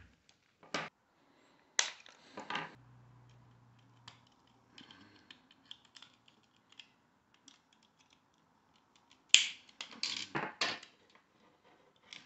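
Sharp clicks and snaps of hand tools and a plastic car-clock housing being worked on by hand: a few separate snaps in the first three seconds, then a quick burst of clicks about nine to eleven seconds in, with faint ticking and scraping between.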